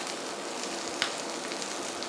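Mashed potato patty frying in hot oil in a cast-iron skillet: a steady sizzle, with one short click about halfway through as a spatula works under the patty to flip it.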